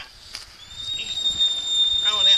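A steady high-pitched tone, like a whistle, rising slightly as it starts about half a second in and then held evenly, with a man's voice over it near the end.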